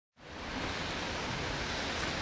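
Steady, even rushing outdoor background noise, fading in from silence over the first half second.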